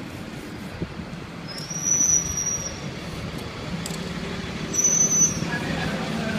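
Aerosol spray-paint can hissing in two short bursts, the first lasting about a second and the second shorter, over a steady low rumble.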